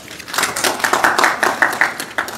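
Scattered hand-clapping from a small audience, starting a moment in and running on as a quick irregular patter of claps.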